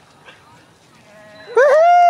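A loud, drawn-out high-pitched cry begins about one and a half seconds in, rising and then holding its pitch.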